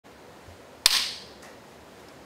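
One loud, sharp hand clap a little under a second in, followed by a short ring of the room.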